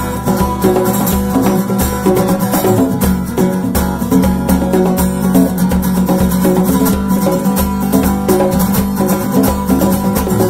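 Instrumental band music: strummed acoustic guitar driving the rhythm, with congas and hand percussion playing along in a steady groove and no singing.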